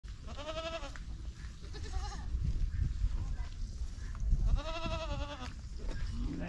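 A herd of goats bleating: two clear, wavering bleats about half a second in and near the end, with a fainter one in between, over a steady low rumble.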